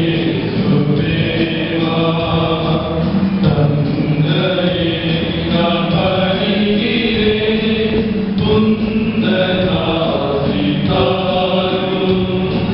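Church choir singing a hymn together, in sustained phrases with short breaks between them every couple of seconds.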